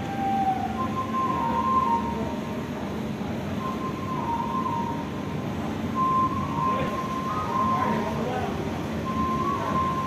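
Busy-hall ambience: a steady wash of indistinct voices and noise, with a high, steady whistle-like tone that sounds on and off several times, shifting slightly in pitch.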